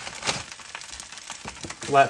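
A frozen paratha warming in a nonstick frying pan, sizzling faintly as a steady hiss with a few small clicks and rustles of handling.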